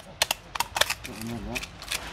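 Sharp clicks and cracks of a small knife tip working into a sea urchin's brittle shell against a concrete slab, several in quick succession.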